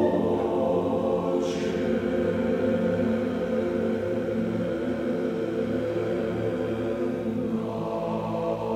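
Men's glee club choir singing long, sustained chords, the upper voices thinning out in the middle and coming back in fuller near the end.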